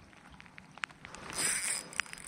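Scattered light ticks of rain, then about a second and a half in a brief rustling swish as the fishing rod is snatched up to set the hook on a trout bite.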